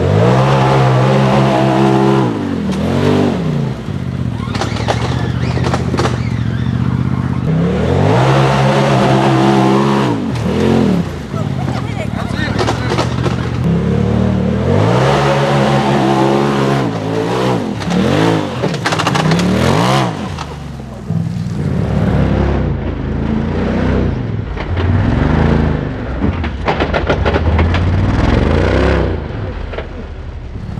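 Polaris RZR side-by-side engine revving hard in repeated surges, its pitch climbing and dropping again and again as the driver works the throttle up a steep dirt hill climb. There are several long pulls in the first twenty seconds, then a run of shorter, quicker blips near the end.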